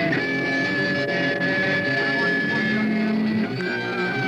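Amplified electric guitars letting long notes ring out, each held steady for a couple of seconds, with a new sustained note coming in near the end.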